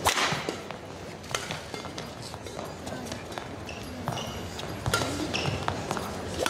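Badminton rally: rackets strike the shuttlecock about every second and a half, the hardest hit at the very start, with short squeaks of court shoes on the mat between strokes and a murmuring arena crowd behind.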